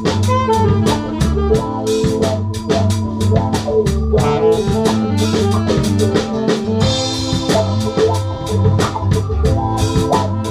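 Live funk band jamming: drum kit keeping a steady groove under bass and an organ-toned keyboard, with a brighter cymbal wash about seven seconds in.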